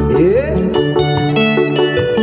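Live rumba band playing: guitar lines over low bass notes and a drum kit, with a short upward-sliding note just after the start.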